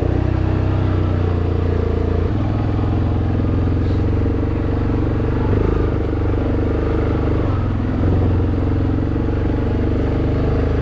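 ATV engine running steadily as the four-wheeler is ridden along a trail. The engine note shifts slightly about two seconds in and again near the end.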